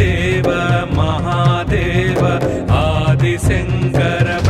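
Hindu devotional music: a sung chant over instrumental accompaniment with a steady low beat.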